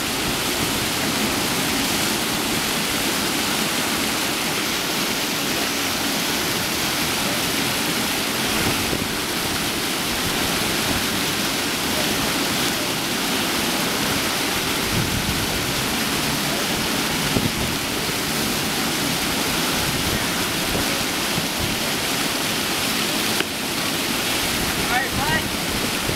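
Steady rushing of water from an artificial wave-riding machine, a fast sheet of water pouring up a sloped blue surface and breaking into spray.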